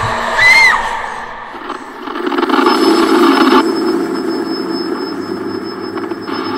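Horror film soundtrack: a short, high, arching cry about half a second in, then a loud low rumbling drone with a thin steady high whine over it.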